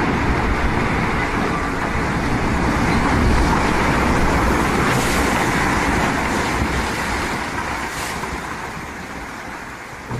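Landslide of rock and earth crashing down a slope: a continuous rumble, strongest in the low end, that fades over the last few seconds as the collapse settles.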